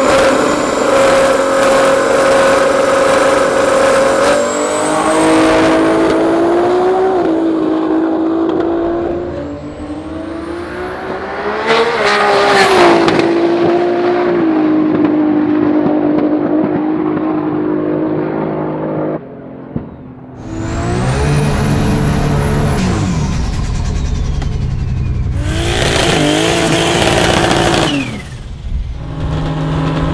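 Turbocharged 3.8-litre Ford Barra straight-six of a drag-racing XW Falcon revving and holding steady revs, with a high whistle rising over the engine around twelve seconds in. The sound changes abruptly twice, as between separate shots.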